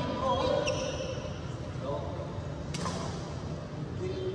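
Badminton players' voices echoing in a large indoor hall, with a single sharp smack of a racket hitting a shuttlecock about three-quarters of the way through.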